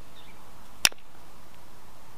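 A single sharp click about a second in: a strike in indirect-percussion flintknapping, the copper-tipped punch set on the edge of a flint arrowhead preform being struck to drive off a flake.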